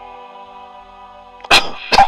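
A person sneezing loudly close to the microphone, in two sharp explosive bursts about half a second apart, starting about a second and a half in. Soft sustained keyboard-pad music plays underneath.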